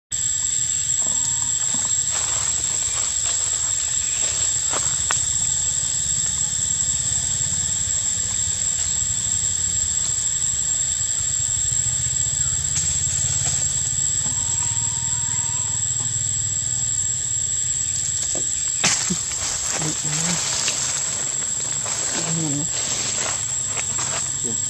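A steady, high-pitched drone of forest insects. Near the end come a few short scrapes and rustles from macaques clambering on the tree.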